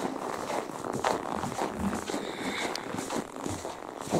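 Soft rustling and shuffling from people moving about.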